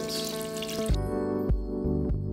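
Salon shampoo-bowl spray hose running water over hair wound on perm rods, cutting off suddenly about a second in, with background music that carries on alone with a steady beat.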